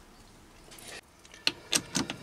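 Quiet handling, then three light metallic clicks in the last half second as a steel mandrel is worked free of a lathe's chuck jaws.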